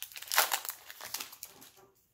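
Foil wrapper of a Pokémon booster pack crinkling as it is opened and handled, loudest about half a second in and fading out near the end.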